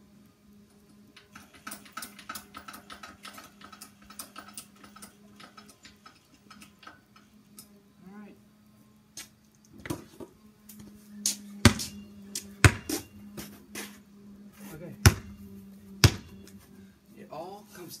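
Rapid ratcheting clicks from an adjustable basketball hoop's height mechanism as the rim is raised, then a basketball bouncing on a concrete driveway, four loud bounces in two pairs. A low steady hum runs underneath.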